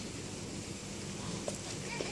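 Quiet outdoor background noise with a faint steady low hum and a light click about one and a half seconds in.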